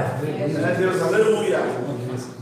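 Speech only: a man's voice preaching in Portuguese over a microphone.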